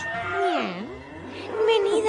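A cat meowing: one long meow that dips in pitch and then rises to a held tone.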